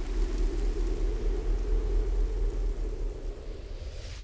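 Steady low rumble with a hiss over it, easing off near the end: the sound effect laid under an animated end card.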